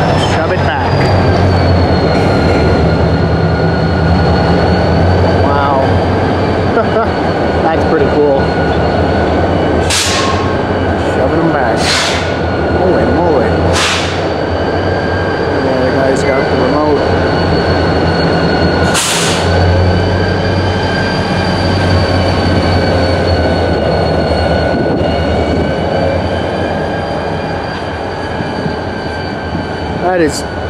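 Union Pacific diesel switch locomotive rumbling as it hauls a cut of cars through the yard under radio remote control, echoing under a bridge, with a steady high whine over the engine. Four short hisses cut through, three about two seconds apart near the middle and one a few seconds later.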